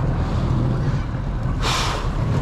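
Outboard motor running steadily in gear at low speed, a low even drone. About one and a half seconds in comes a brief rush of noise.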